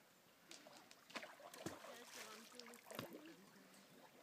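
Faint splashing and lapping of water from a swimmer's breaststroke in a lake, a few small splashes scattered through an otherwise quiet moment.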